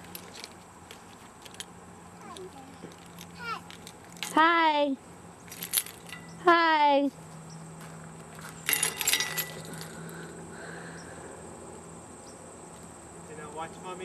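A toddler's voice letting out two short, rough calls that fall in pitch, each about half a second long and about two seconds apart. A brief metallic jangle comes a couple of seconds later.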